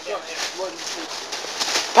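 Faint voices talking in the background between commentary lines, over a low steady background noise.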